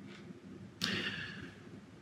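A man's sharp intake of breath about a second in, a short rushing noise that fades over most of a second, against faint room tone.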